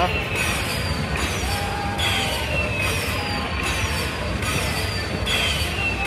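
Video slot machine's win count-up sound as the winner meter climbs: a bright falling chime repeating about once a second, over a steady low casino hum.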